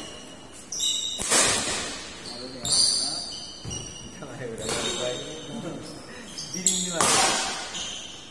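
Badminton rally: rackets strike the shuttlecock about every one to two seconds, with sneakers squeaking on the court mat between shots. The hits echo in a large hall.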